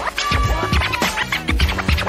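Hip hop turntable scratching: a vinyl record jerked back and forth under the needle in many short, quick strokes, over a drum beat with a deep kick and bass.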